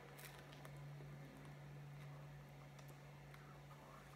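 Faint bite into a slice of pizza and quiet chewing, a few soft clicks, over a steady low hum.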